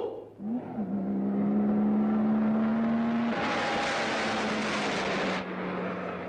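Car engine running at a steady pitch, with a loud rushing noise from about three and a half to five and a half seconds in.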